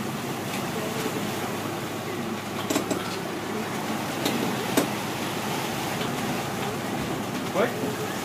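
Steady noise of a sport-fishing boat under way: engine running and wake water washing astern. A few brief knocks come in the middle, and a short shout comes at the very end.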